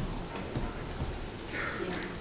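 Footsteps on a hard floor: a few faint knocks over the low murmur of a hall.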